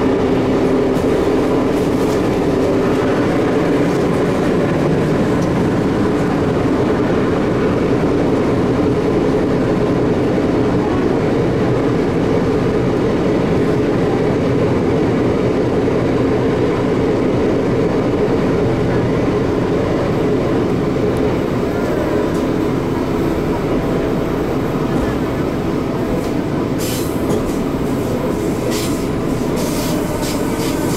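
Cercanías Madrid electric commuter train running, heard from inside the carriage: a steady rumble of wheels on rail with motor hum. Near the end come several short, high-pitched squeaks from the wheels.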